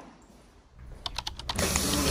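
A quick run of four or five light clicks, like tapping or typing, about a second in. Then the steady background noise of a busy indoor space sets in.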